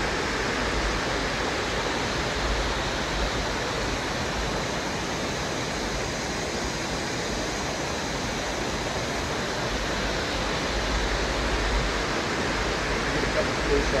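Waterfall and the rocky creek below it, a steady rush of falling and running water.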